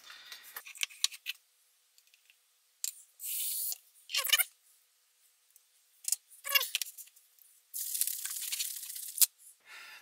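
Handling noises of a plastic shaker bottle and kitchen items: scattered clicks and knocks, a few short scraping noises, and a longer rustling hiss of about a second and a half near the end.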